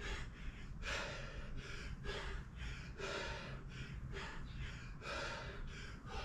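A man breathing hard in repeated gasps and exhales, about one or two breaths a second, while swinging a kettlebell, over a low steady hum.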